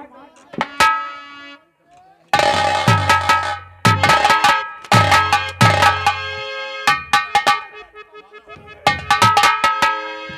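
Live folk-theatre drum accompaniment: loud bursts of rapid drum strokes with ringing tones, with a brief lull about two seconds in.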